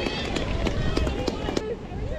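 Footballers' voices shouting and calling across an outdoor pitch, with several sharp knocks and the footfalls of players running.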